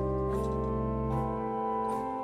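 1890 Bazzani pipe organ playing sustained chords. The harmony shifts about a third of a second in and again just after a second. The low bass notes die away near the end.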